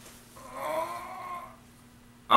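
A man's pained, whining groan through a grimace, starting about half a second in and lasting about a second.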